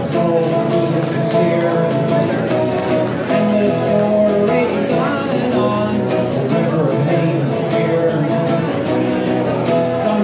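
A man singing his own song live while strumming an acoustic guitar at a steady strum.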